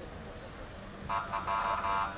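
Street background noise, then a car horn sounding three times about a second in: two short toots and a longer one.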